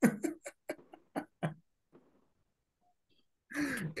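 A person laughing in short, breathy bursts that die away after about a second and a half, followed by silence. A voice starts near the end.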